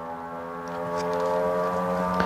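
A person humming one long, steady note that slowly grows louder.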